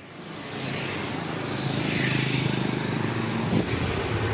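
Road noise from riding a two-wheeler through traffic: a steady rush of moving air and tyres over a low engine hum.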